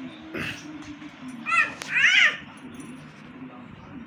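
Two short, loud, high-pitched vocal calls about half a second apart, each rising and falling in pitch, with a sharp click between them, over a low steady background murmur.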